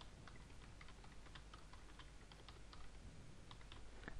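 Faint computer keyboard typing: a run of irregular keystrokes.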